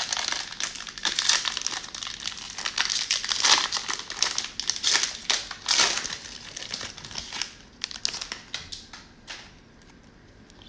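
Cellophane wrapper of a trading-card cello pack crinkling and tearing as it is opened, a dense run of crackles that thins to a few scattered clicks near the end.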